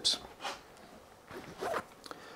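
Faint rustling and scraping as hands work the set hair on a mannequin head.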